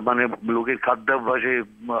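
Speech only: a man talking in Bengali, his voice thin and cut off at the top, as over a phone line.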